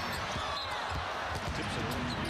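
Basketball dribbled on a hardwood court, a few bounces, with sneakers squeaking over a steady arena crowd murmur.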